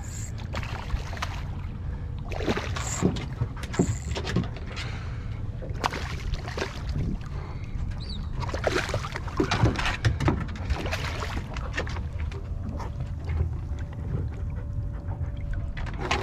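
Water splashing as a small snook is reeled alongside the boat and thrashes at the surface, with many short sharp splashes, busiest in the middle. Under it a steady low rumble of wind on the microphone.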